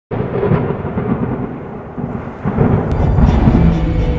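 A loud, deep rumble that starts suddenly and swells twice, like a thunder effect, with steady music tones coming in near the end.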